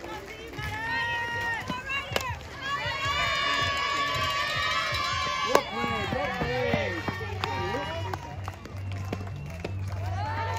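Crowd yelling and cheering during a fast-pitch softball play, with many high voices held together for a few seconds. A sharp crack about two seconds in is the bat hitting the ball, and a loud smack a little after halfway is the ball landing in a glove.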